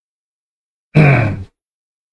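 A man's short wordless vocal sound, a grunt-like 'uh' of about half a second with its pitch falling slightly, about a second in, set in dead silence.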